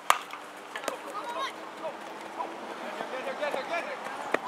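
A baseball bat hitting a pitched ball right at the start, one sharp crack, with a lighter knock about a second later. Players and spectators then shout and cheer as the ball is in play.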